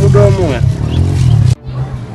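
A loud roar with swooping pitch over a heavy low rumble, cut off abruptly about one and a half seconds in.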